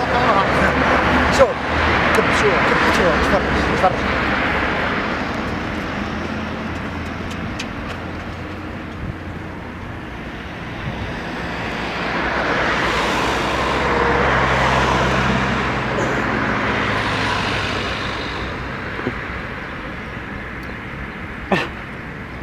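Road traffic on a city street: vehicles passing, the noise swelling and fading several times over a steady low engine hum.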